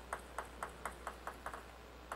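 Table tennis ball bounced repeatedly on the table before a serve: light, even ticks about five a second, coming slightly quicker toward the end, then stopping.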